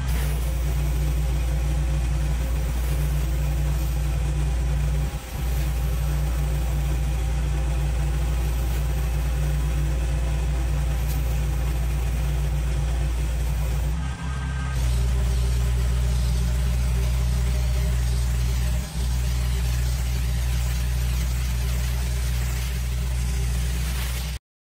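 Commercial pressure washer's engine running steadily, with high-pressure water spraying on a concrete driveway from a rotary surface cleaner and then a spray wand. The sound breaks off briefly three times and changes slightly about halfway through.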